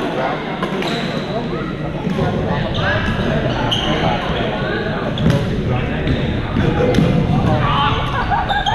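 Pickleball paddles striking the plastic ball, sharp pops a second or two apart, echoing in a large gym over players' voices.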